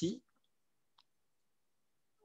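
A man's last word trails off, then near silence with a single faint click about a second in.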